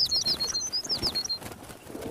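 Bird-chirp sound effect: a quick string of short, high tweets over soft rapid clicks. The tweets stop about one and a half seconds in.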